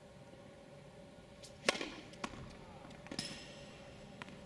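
Tennis ball bouncing on a hard court before a serve: three sharp knocks, the loudest about a second and a half in, a smaller one half a second later, and another near the three-second mark.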